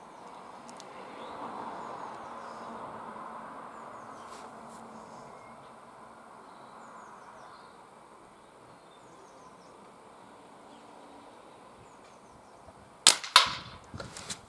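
Faint steady outdoor background noise, then near the end a sharp crack as a Diana Mauser K98 .22 underlever spring-piston air rifle fires. A second sharp crack follows about a third of a second later: the pellet striking at the target and knocking a paintball off its golf tee.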